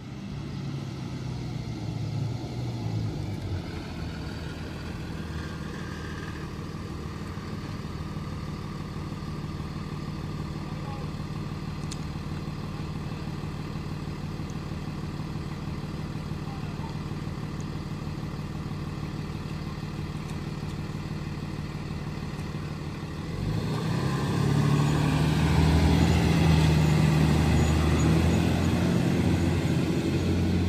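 A school bus engine runs steadily as the bus pulls up and stands at the stop. About three-quarters of the way through it grows louder as the bus pulls away.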